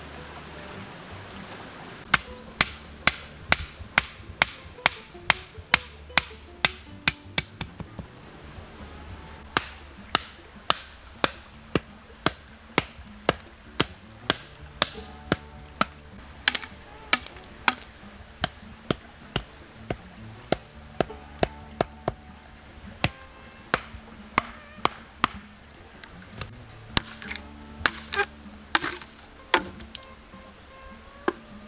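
Rapid, evenly paced chopping strikes, about two a second, with a short break about a quarter of the way through, over soft background music.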